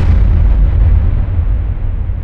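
A loud, deep, muffled boom sound effect that hits at once and slowly dies away as a low rumble.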